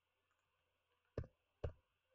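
Two sharp clicks from computer input, about half a second apart, in the second half; otherwise near silence.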